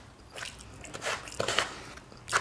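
Close-up chewing and mouth sounds of a person eating, in several short bursts.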